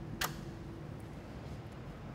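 A single sharp click about a quarter of a second in, the chassis ignition key of an M6 Avalanche street sweeper control system being turned on to power up the control console, with a fainter tick about a second in.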